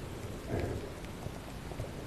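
Underwater noise heard through an action camera's waterproof housing: a steady, muffled rush of water with faint scattered crackling, swelling briefly about half a second in.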